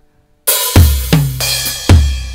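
Sampled rock drum kit from the n-Track Studio Android app's drum pads: a cymbal crash about half a second in, then two heavy kick-drum hits about a second apart with a ringing drum hit between them.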